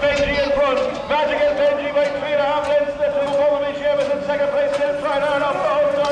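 A man's race commentary calling the greyhound race over the stadium loudspeakers, with a steady hum underneath.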